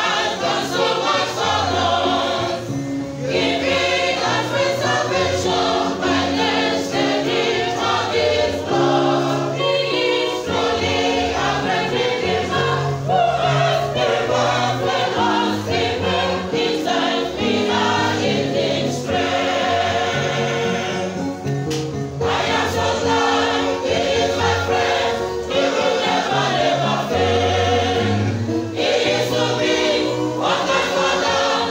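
A church choir, mostly women's voices, singing a gospel song together in harmony, phrase after phrase with short breaks between lines.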